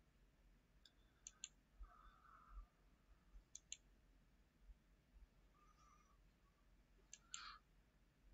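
Faint computer mouse clicks over near silence: a few pairs of quick clicks, about a second in, around the middle and near the end.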